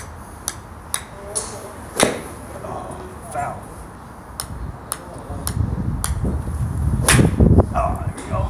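Golf clubs striking balls at a driving range: a run of sharp clicks, mostly faint, with a loud strike about two seconds in and another about seven seconds in. A low rumble builds over the last couple of seconds.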